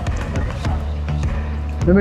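Background music with a steady, low bass line that shifts pitch about two-thirds of a second in; a man's voice starts right at the end.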